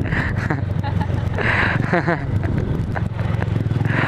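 Motorcycle engine running steadily while riding along, picked up by a helmet-mounted camera.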